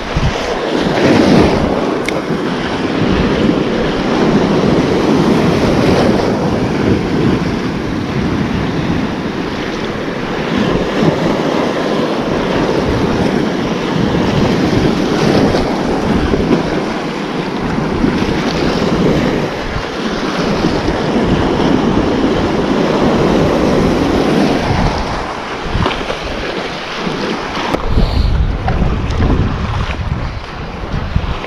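Small waves breaking and washing over the shoreline in surges, with wind buffeting the microphone. A heavier gust of wind rumble comes near the end.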